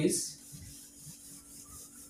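Faint rubbing of a duster wiped across a whiteboard as writing is erased.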